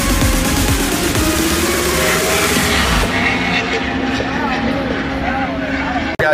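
Race car engine revving under music, its pitch rising steadily through the first couple of seconds. About halfway through, the sound turns duller as the high end drops away.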